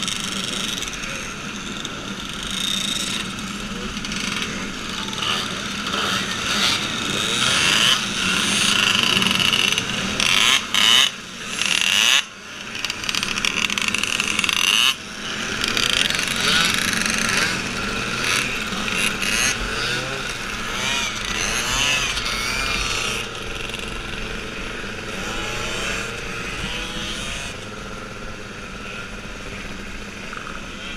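Several small moped engines running and revving together, a dense buzz whose pitch rises and falls as throttles are worked. The sound drops out briefly a few times midway.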